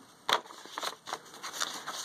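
Paper handling: a paper playbill rustling and crinkling as it is slid back into a paper pocket in a junk journal, with a sharper crackle about a third of a second in and lighter rustles after.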